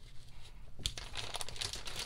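A plastic wet-wipes pack and wipe crinkling and rustling as they are handled and set aside, starting about a second in.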